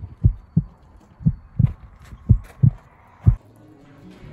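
Heartbeat sound effect: low thumps in lub-dub pairs, about one pair a second, with three pairs and a single last beat near the end.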